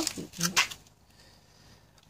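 Brief fragments of a man's voice, then about a second of near silence with a faint hiss.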